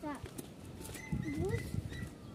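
Footsteps going down concrete steps, a series of soft low thumps, with a faint child's voice rising in pitch about a second in.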